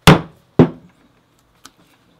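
A four-prong 5 mm stitching chisel struck twice, about half a second apart, punching a row of stitching holes through a small leather tab; the first strike is the louder, and a faint click follows later.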